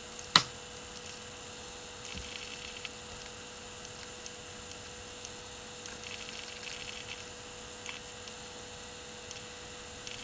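Steady low electrical hum over faint background noise, with one sharp click about half a second in and a few faint crackles later.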